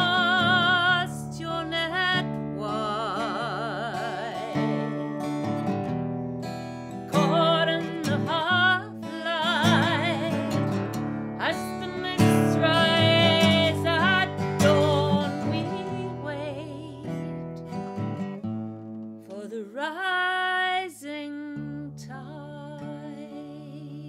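A woman singing a slow folk song over her own acoustic guitar, holding notes with a wavering vibrato, the guitar chords ringing steadily beneath the sung phrases.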